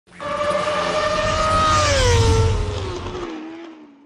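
A racing engine at high revs: its pitch holds steady, then falls away as the sound fades out near the end.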